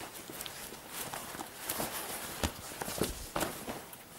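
Whole sheep/goat leather hides being handled and folded over a cardboard box: irregular soft rustling, flapping and light knocks, a little louder in the second half.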